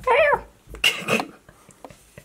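A woman's drawn-out, sing-song call, the pitch rising then falling, like a cat's meow, as in a cooed 'good night'. About a second in comes a short breathy hiss.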